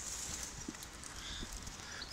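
Quiet outdoor background hush with a few faint soft clicks.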